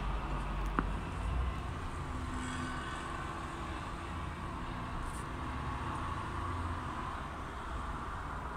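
Steady low background rumble of urban surroundings, with a single faint click under a second in.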